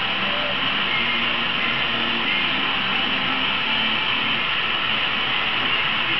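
A handheld gas torch's flame burning with a steady hiss.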